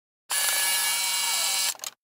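Camera sound effect: a steady whirring hiss lasting about a second and a half, cut off by a couple of quick shutter-like clicks near the end.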